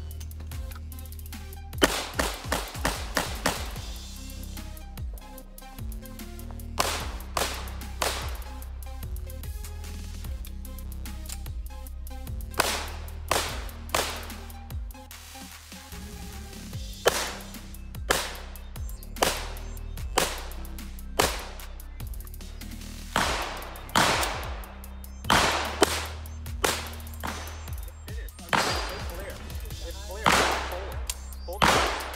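Pistol fired repeatedly in quick strings and pairs of shots, with pauses of a second to a few seconds between groups; the longest rapid string is a couple of seconds in, and another dense run comes near the end.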